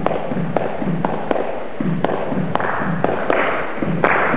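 Hand claps in a rhythmic, syncopated pattern, about two claps a second with some closer pairs, over short low beats between them. Toward the end a softer spread of clapping builds up behind it, as other hands join in.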